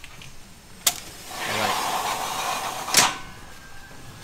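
A greenhouse door being slid: a sharp click about a second in, a rushing slide lasting about a second and a half, then a sharp knock as it stops.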